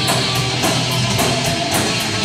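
Heavy metal band playing live: distorted electric guitars, bass and drums, with cymbals struck in a fast, even beat.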